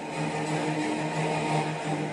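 A steady droning tone with several overtones, dipping briefly a few times.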